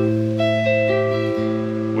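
Electric guitar playing an A minor seven chord voiced high on the neck, rooted at the 12th fret of the A string. The chord rings steadily, with further upper notes sounding about half a second in.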